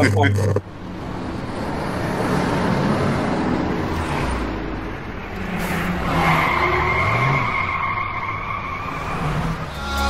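A car sound effect: rushing engine and road noise that swells and eases, with a steady high squeal from about six seconds in. A short laugh is heard at the very start.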